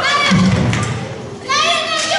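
Raised voices exclaiming, with a dull thud about half a second in.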